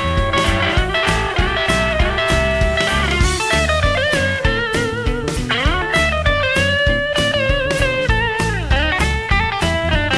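Instrumental break in an electric blues song: a lead electric guitar plays bending, sliding notes over a steady drum beat.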